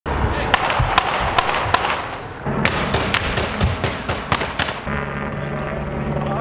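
A string of gunshots: about ten sharp cracks at uneven gaps of roughly half a second, each with a short echo. A steady low hum comes in near the end.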